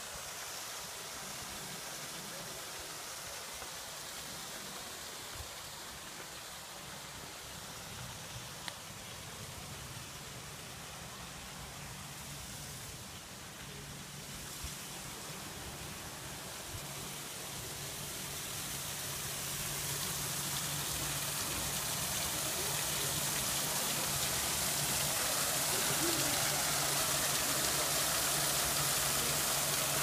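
Steady rush of water from a small garden waterfall into an ornamental pond, growing louder over the second half, with a low steady hum underneath.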